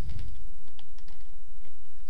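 Small clicks and handling noise from fingers working a twist tie on a toy's packaging, with a low bump right at the start, over a steady crackling hiss.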